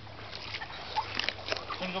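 Small, irregular splashes and drips of water from a kayak paddle, a few light strokes in the water.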